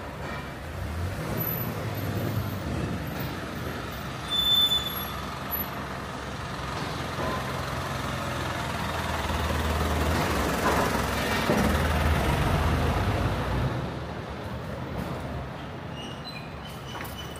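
A small Hino delivery truck's engine passing close by over street traffic noise, loudest about ten to thirteen seconds in. There is a brief high-pitched squeak about four seconds in.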